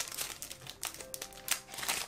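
Foil Pokémon booster pack wrapper crinkling in the hands as it is opened: irregular crackles throughout.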